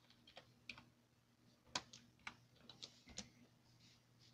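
Faint, irregular keystrokes on a computer keyboard as a web search is typed, each press a short click.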